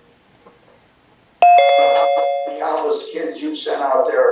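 Zoom meeting's two-note chime played through a laptop speaker as the call reconnects, starting suddenly about a second and a half in, the second note slightly lower, ringing for about a second before meeting speech comes through.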